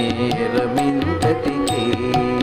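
Carnatic devotional music: a violin plays a gliding, ornamented melody over regular hand-drum strokes.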